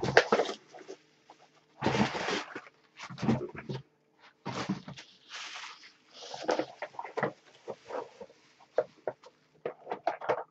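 Newspaper packing being pulled off and crumpled: irregular bursts of paper rustling and crinkling.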